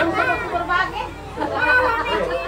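People talking in casual conversation.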